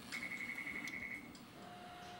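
A rapid run of high electronic beeps at one pitch, about a second long, from a touchscreen memory-test computer, followed near the end by a short, lower steady tone.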